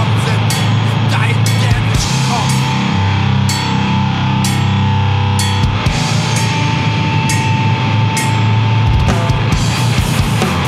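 Grindcore/powerviolence recording: heavily distorted guitar and bass over a drum kit with repeated cymbal crashes. A single high note is held for several seconds through the middle.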